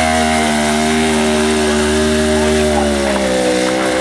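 Sports motorcycle engine held at high revs through a burnout, the rear tyre spinning on the tarmac. The note stays steady, then sags a little near the end.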